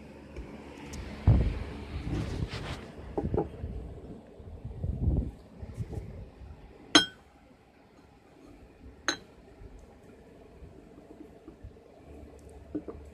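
Rustling and low bumps for the first five seconds or so, then a cup clinks twice, sharply, about two seconds apart; the first clink rings briefly.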